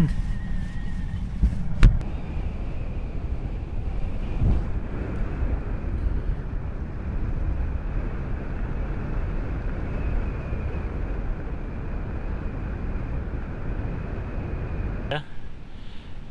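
Strong wind buffeting the microphone: a steady, low rumbling roar, with one sharp knock about two seconds in. It drops away near the end.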